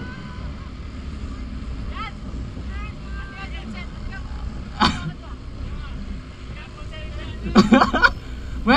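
Steady low rumble of wind and road noise while riding along at speed, with scattered shouts and calls from the riders. One loud shout comes about five seconds in, and loud voices follow near the end.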